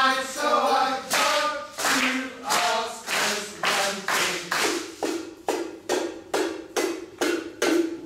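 A group of voices chanting together, then rhythmic hand claps that speed up from about one and a half to about three a second toward the end, over a low held group hum.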